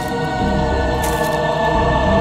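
Eerie background score with sustained choir-like voices over steady held tones, and a brief high hiss about a second in.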